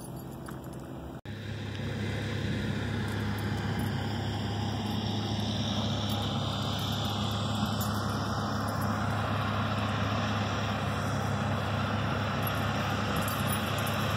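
Heavy diesel earthmoving machines working in the distance: a steady low engine drone that starts after a brief cut about a second in.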